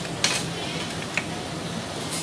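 Eating utensils against a plate: one sharp scrape-clink about a quarter second in and a smaller tick about a second later, over a steady background hum.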